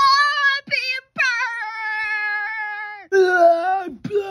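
A child's high voice making four long, held 'ahh' cries in a row, each dipping slightly in pitch. The third cry is held for nearly two seconds, and the last is lower and wavering.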